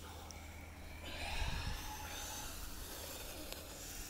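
A person breathing out slowly through pursed lips in an ice bath: a long, soft, airy exhale that starts about a second in, over a faint low rumble.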